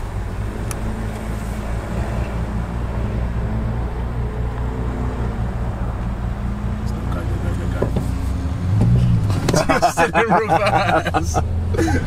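Car engine idling steadily, a low hum heard from inside the car's cabin. In the last few seconds the pitch rises briefly and voices come in over it.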